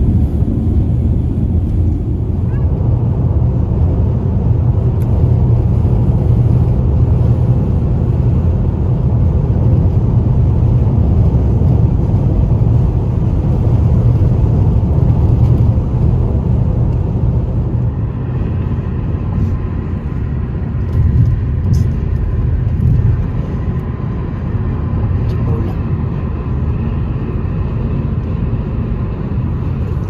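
Steady low rumble of tyres and engine heard from inside a vehicle cruising at highway speed. It eases a little about two-thirds of the way through.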